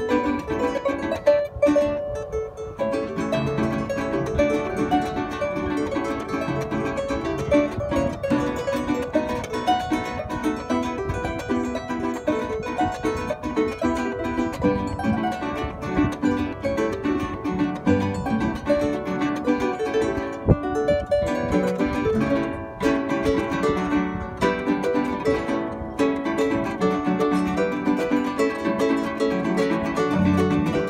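Arpa llanera (Colombian llanera harp) playing a fast instrumental melody of quick plucked notes, accompanied by a strummed cuatro.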